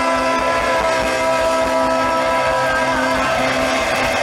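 Live rock band holding a long sustained chord on electric guitar and keyboard, several notes ringing steadily together over low drum hits.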